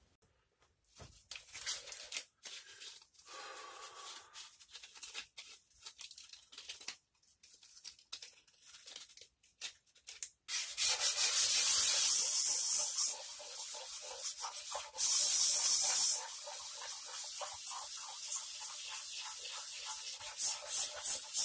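Sandpaper worked by hand over dried body-filler patches and the painted body of a Squier electric guitar: scratchy rubbing strokes, scattered and quieter at first, then louder and denser from about halfway, with two long stretches of loud steady hiss.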